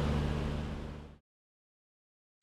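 Stove exhaust fan running with a steady hum and airy rush, drawing air through a mesh strainer of just-roasted coffee beans to cool them quickly. The sound fades out about a second in, leaving silence.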